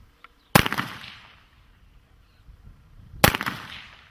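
Two gunshots about two and a half seconds apart, each followed by a short echo.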